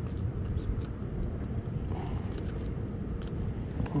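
Steady low outdoor rumble, with a few short, faint spritzes from the trigger pump spray bottle of fish-attractant scent being sprayed onto a soft-plastic tube jig.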